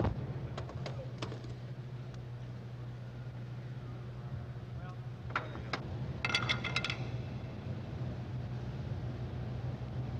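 A steady low hum under faint, indistinct voices, with a few sharp clicks and a brief jingling rattle about six seconds in.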